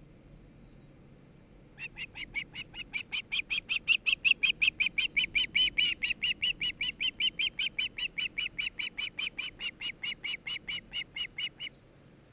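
Osprey calling close to the nest camera: a long run of short, sharp whistled notes, about five a second, starting about two seconds in and lasting nearly ten seconds, loudest in the first half.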